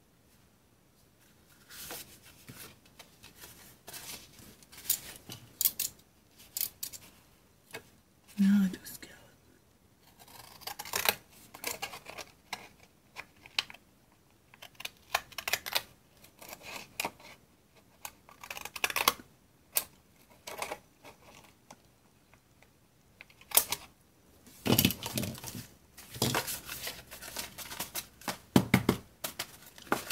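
Decorative-edge craft scissors cutting the edge of a paper cover: runs of short crisp snips and paper rustling, with brief pauses between cuts.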